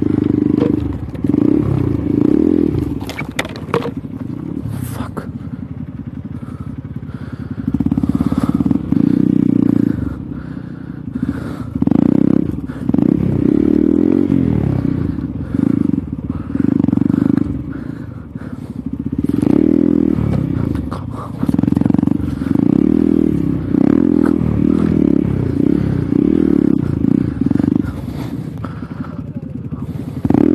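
Hero Xpulse 200's single-cylinder four-stroke engine revving in repeated short bursts on and off the throttle at low speed on a rough dirt trail, with occasional clatters and scrapes.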